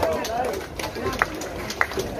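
Speech: people talking, with a couple of brief sharp ticks.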